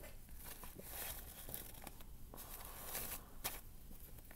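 Faint rustling and crinkling of a pleated disposable surgical mask being unfolded and pulled over the face on top of other masks, with small scattered rustles and clicks as its ear loops are hooked over the ears.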